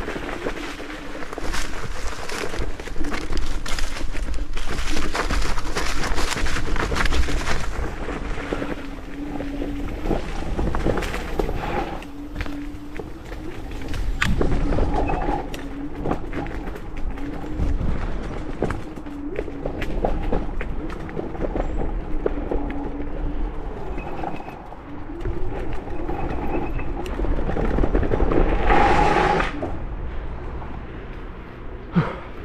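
Electric scooter ridden over a rough, leaf-covered dirt trail: the tyres rumble and the frame rattles over the bumps, under a motor whine that rises and falls with speed. A short, loud burst of noise comes near the end.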